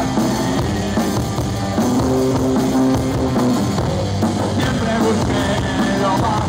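Live rock band playing: electric guitar, bass guitar and drum kit, loud and steady, with a sustained note held from about two seconds in.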